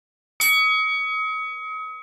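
A single bell-like notification chime sound effect, struck once just under half a second in and ringing with several overtones as it fades away over about a second and a half. It marks the notification-bell icon being clicked.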